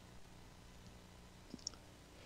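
Near silence: faint room tone, with two small sharp clicks about one and a half seconds in.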